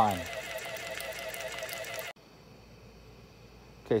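Small peristaltic dosing pump motor running with a steady whine, which cuts off abruptly about two seconds in, leaving a faint hiss.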